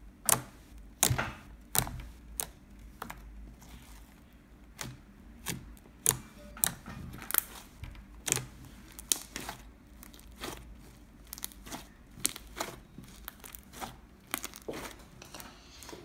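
Fingers pressing, poking and kneading a large lump of pink slime, giving sharp, irregular sticky pops and clicks as it is squeezed and pulled.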